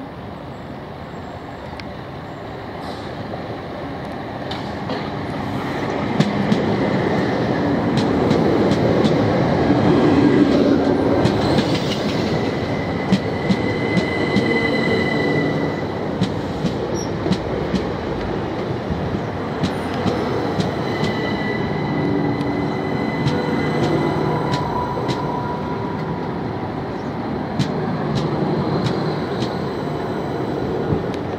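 Bombardier Class 377 Electrostar electric multiple unit running in along the platform and passing close by, growing louder over the first ten seconds and then holding a steady rumble. Sharp wheel clicks over the rail joints run throughout, with several short high-pitched squeals.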